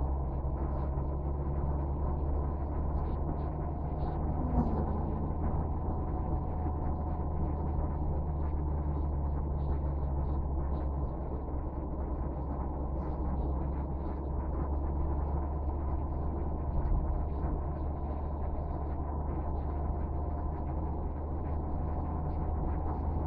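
Steady low drone of a car driving at road speed, engine and tyre noise heard from inside the cabin.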